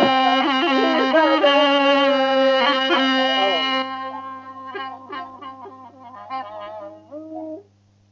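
Azerbaijani ashiq music: a reedy wind melody over a steady held drone, with a saz underneath. The wind melody stops about four seconds in, leaving the saz plucking sparse notes alone, followed by a short pause near the end. A low mains hum runs under the old recording.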